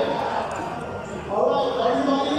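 Indistinct voices of people talking in a large hall, getting louder about one and a half seconds in, with a few dull knocks.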